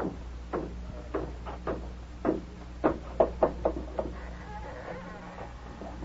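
Radio-drama sound effect of footsteps climbing wooden cellar stairs: about a dozen knocking steps, quickening toward the top, followed by a faint creak.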